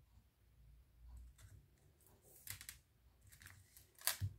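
Faint paper handling: a few soft clicks and rustles as a piece of patterned card stock is laid and pressed onto a glued card, around a second and a half, two and a half and three and a half seconds in.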